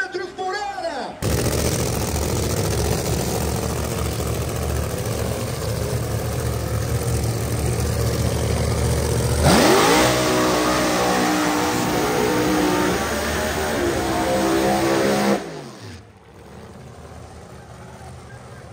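Pro Mod drag car's V8 engine running loud and rough, then revving up sharply about halfway through and holding high revs for several seconds. Near the end the sound drops away quickly, falling in pitch.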